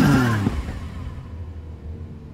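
Sports car engine revving, its pitch falling over the first half second, then dropping to a low rumble.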